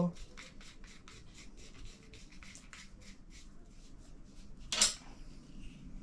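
Small spinning reel worked by hand, clicking steadily about five times a second, then one sharper snap nearly five seconds in.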